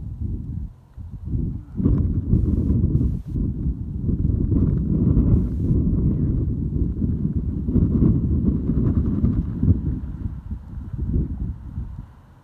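Wind buffeting the microphone in gusts: a loud, uneven low rumble that rises and falls, dropping away abruptly at the end.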